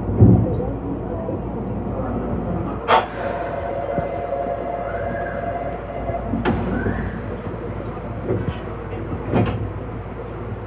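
Steady hum and murmur of an underground station platform heard from the cab of a stationary Meitetsu 6500 series electric train. About three seconds in a sharp click is followed by a steady single-pitched tone that ends with another click some three and a half seconds later, and one more click comes near the end.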